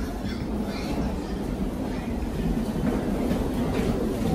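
Steady low rumble and rattle of wheels rolling over a jet bridge floor: wheeled suitcases and a metal trolley being pushed along, with footsteps.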